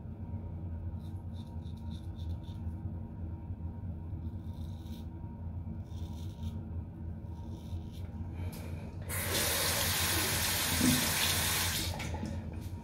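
Adjustable safety razor, set at about two, scraping through lathered stubble in several short strokes over the first nine seconds. About nine seconds in, a water tap starts running steadily into the sink and goes on to the end.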